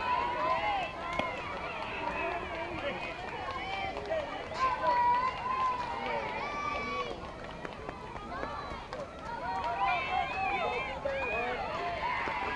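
Many overlapping voices chattering and calling out at once, indistinct, as from players and spectators at a softball field.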